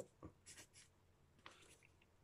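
A pen scratching faintly across paper in a few short strokes as letters are handwritten.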